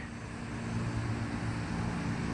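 A steady low motor hum with a faint hiss behind it, unchanging throughout.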